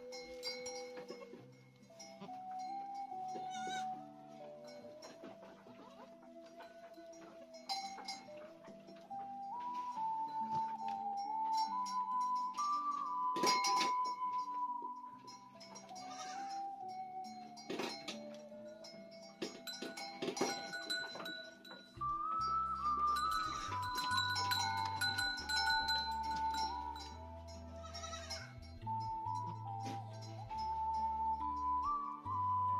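Background music with a flute-like melody of held notes, joined by a bass line about two-thirds of the way through. Over it, a goat bleats several times in short calls.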